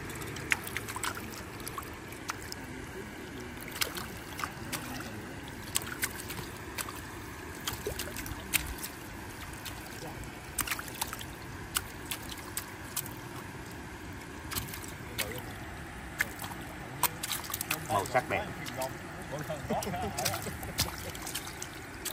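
Farmed shrimp flicking and jumping in a feeding tray lifted from the pond, making scattered sharp clicks and small splashes, over water trickling and dripping from the tray.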